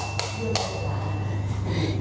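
A wall switch clicked twice, about a third of a second apart, with a thin ringing tone fading away and a steady low hum.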